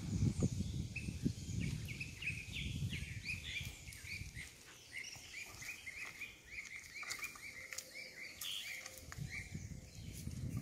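Leafy tamarind branches rustling and shaking as they are pulled to knock pods loose, heaviest in the first few seconds and again near the end. Over it, a bird calls a long string of short chirps, about three a second.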